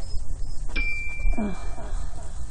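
A single bell-like ding about three quarters of a second in, ringing on steadily for about a second: the notification-bell sound effect of an animated subscribe button. A steady low rumble runs underneath.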